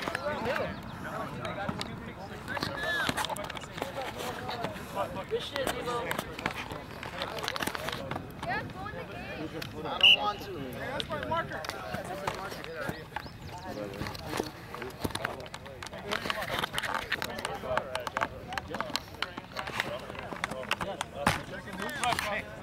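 Indistinct talk of players and onlookers, several voices at a distance, with a single short, loud high-pitched sound about ten seconds in.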